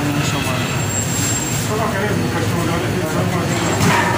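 Busy eatery room noise: background voices over a steady low hum.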